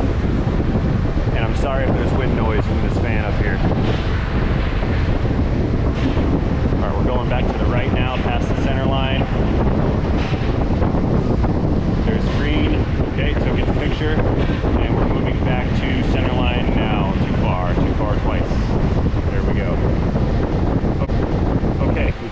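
Steady rushing of moving air buffeting the microphone, loud and unbroken, with faint voices underneath.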